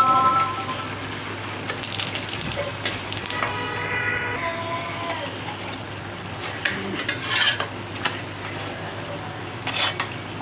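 Flatbread frying in hot oil in a metal pan, a steady sizzle. A metal spatula scrapes and clicks against the pan a few times, most clearly about two-thirds of the way in and again near the end.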